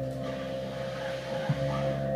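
Live improvised music from a saxophone, keyboard and fretless bass trio: steady drone-like held tones, with a new low note sounding about one and a half seconds in and a soft breathy hiss during the first second.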